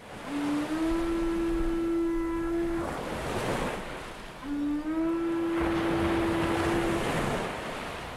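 Ocean surf with a low, horn-like note sounding twice over it, each time scooping up slightly in pitch at its start and then held for about two seconds.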